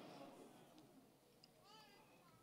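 Near silence: the church's room tone as the preacher's amplified voice dies away at the start, with a faint, brief pitched sound, like a distant voice, near the end.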